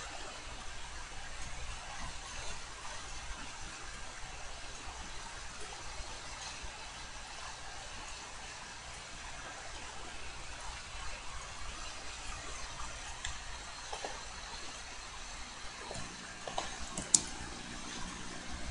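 Room tone from a desktop recording: a steady faint hiss with a low hum, and a few small ticks. A single sharp click about a second before the end, like a mouse click.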